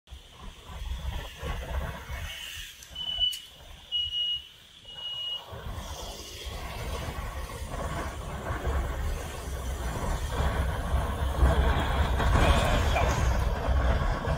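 Wind and road noise on a moving scooter's camera microphone, a low rumble that grows steadily louder from about five seconds in as the scooter picks up speed. Before that, three short high beeps sound about a second apart.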